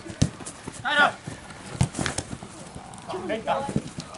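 Footballers shouting to each other across a grass pitch, about a second in and again past three seconds, over a few scattered sharp thuds of play.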